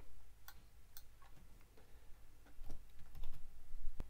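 Computer keyboard keystrokes while a line of code is deleted: two single taps in the first second, then a quick run of several taps around three seconds in.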